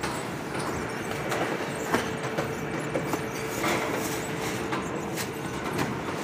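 Automated flatbread production line running: steady machine noise with a faint steady hum and scattered light clicks and knocks.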